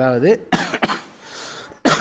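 A man's speech breaks off and he coughs about half a second in, with a short noisy burst again near the end before talking resumes.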